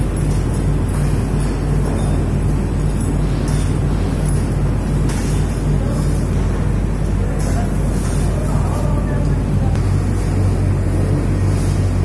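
Steady, loud low hum and whir of powder coating plant machinery running, with faint voices in the background.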